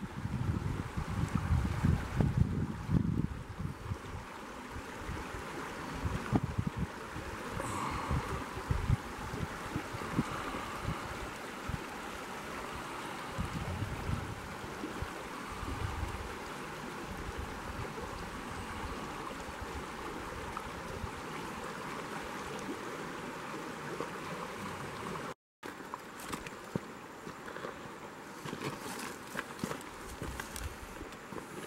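Shallow river riffle running over stones: a steady rush of moving water. Wind buffets the microphone in heavy gusts during the first few seconds and again about halfway, and the sound cuts out for a split second near the end.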